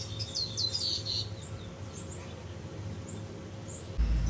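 Small birds chirping: a quick run of short, high, falling chirps in the first second, then a few scattered chirps.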